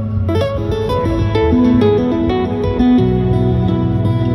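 Acoustic guitar played flat across the lap in an instrumental piece: a held low bass note rings underneath while a quick run of plucked melody notes begins about a third of a second in and steps up and down.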